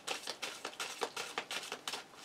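A deck of tarot cards being shuffled by hand: a quick, uneven run of small card clicks and flicks.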